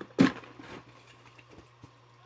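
A package knocks once on a desk as it is handled, just after the start, followed by a couple of faint handling ticks.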